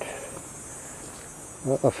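A steady, high-pitched drone of insects in the woods, with a man's voice coming back in near the end.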